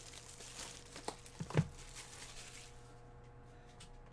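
Plastic shrink wrap crinkling and tearing as it is stripped off a trading-card hobby box, with a couple of light knocks from handling the box; the crinkling dies down about three seconds in.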